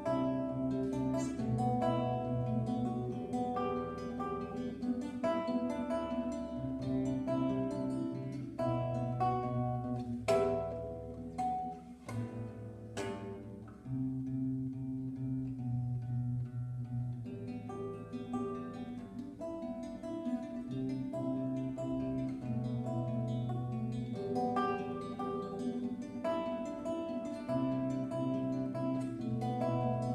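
Solo classical guitar played fingerstyle: a steady flow of plucked notes over held bass notes, with two sharp accented strikes about ten and thirteen seconds in.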